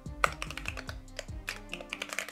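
Computer keyboard typing in quick, irregular keystrokes, over background music with held tones.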